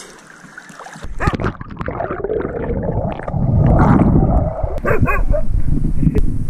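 Pool water churning and splashing right at the microphone as a Siberian husky paddles, building from about a second in and loudest around the middle. About five seconds in comes a brief high whine from a dog.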